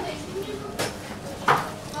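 Two light clicks of tableware during a meal, the second louder, about three-quarters of the way in, over faint background voices.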